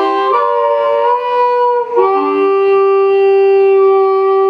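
Harmonica played with the microphone cupped against it in both hands: a few short notes shifting in pitch, then one long note held steadily from about two seconds in.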